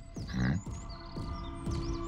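Birds chirping, short high twittering calls, with a brief low pitched sound about half a second in and a steady held tone in the second half.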